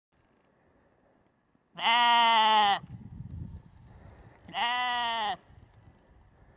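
A sheep bleating twice: a loud call of about a second starting near two seconds in, then a slightly shorter, quieter bleat a couple of seconds later.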